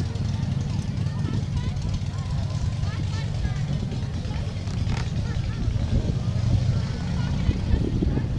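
Outdoor crowd of many people talking at a distance, an indistinct babble of voices over a steady low rumble.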